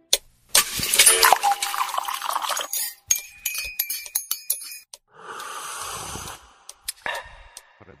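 Radio station jingle made of sound effects: a noisy swish, then a quick run of clinks and chimes, another swish, and a few held tones near the end.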